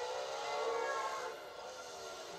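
Film car-chase soundtrack played through a television speaker: several overlapping high tones bending in pitch, loudest in the first second and fading about halfway through.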